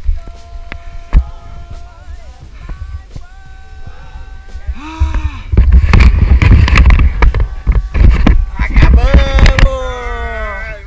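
Wind buffeting the camera microphone, with loud whoops and yells from climbers; a long yell falls in pitch near the end.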